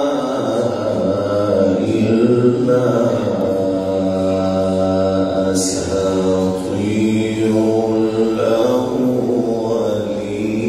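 A male Quran reciter's voice in ornamented, melodic recitation: long held notes that bend slowly in pitch, in phrases with short breaks between them. A brief hissed consonant comes about halfway through.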